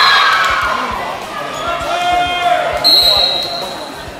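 Volleyball players shouting and cheering in a gym, with thuds on the hardwood floor. About three seconds in, a referee's whistle sounds one steady blast lasting about a second.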